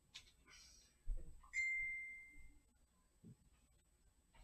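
A soft thump, then a single high, clear ding that rings and fades away over about a second.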